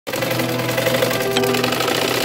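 A sewing machine running with a rapid, even stitching rhythm, under background music with sustained notes.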